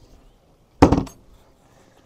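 A deck hatch lid on a motor yacht's foredeck chain locker being shut: a single loud clunk about a second in, followed by a brief clinking rattle.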